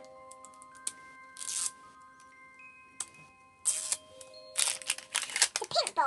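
Plastic wrapping on an L.O.L. Surprise ball crinkling and tearing in short bursts as it is peeled off, more often toward the end. Background music of long held notes plays underneath.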